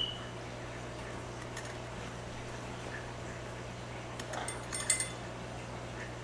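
A short run of sharp, ringing clicks just before the five-second mark, over a steady low hum.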